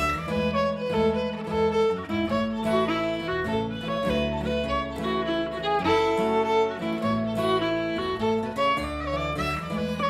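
Irish jig played on fiddle, with guitar accompaniment and an upright double bass plucking a walking bass line under the melody.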